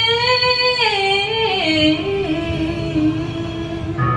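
A woman singing karaoke into a microphone over a backing track: she holds a long note, steps down to a lower note about a second and a half in, and holds that one.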